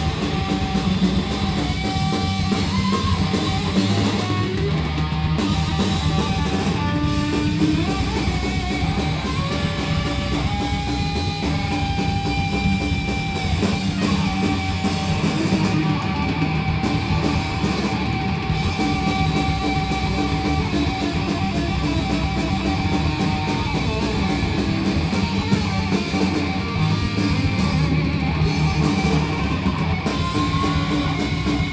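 Stoner metal band playing live at full volume: distorted electric guitar holding long, slightly bending notes over heavy bass and drums, with no singing.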